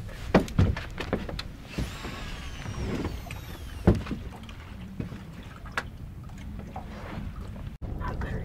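Spinning fishing reel's spool whirring as the line pays out on a cast, a high thin whine that falls in pitch as it slows, over a steady low background of wind on the open water. A few sharp knocks from gear on the boat, the loudest about half a second in and again around four seconds in.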